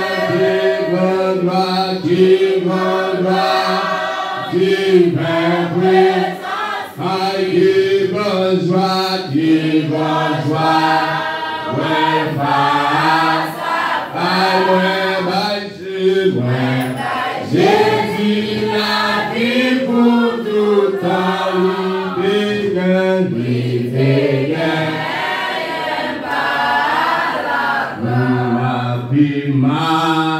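A church congregation singing a hymn together, many voices in unison with long held notes and no steady beat.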